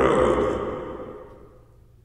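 A person's breathy voice sound with an echo, fading out over about a second and a half.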